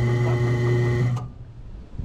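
Electric boat-davit winch motor running with a steady hum as it winds in the steel lift cable, then cutting off suddenly about a second in. It is stopped because the paint mark on the cable has lined up, setting the front of the boat at the desired level.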